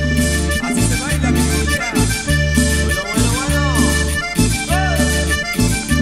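Instrumental break of a cumbia song: accordion carrying the melody over a bass line that pulses about twice a second, with percussion, and no singing.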